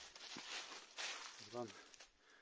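Footsteps in dry fallen leaves on a dirt path: a few rustling steps, then a short spoken word near the end.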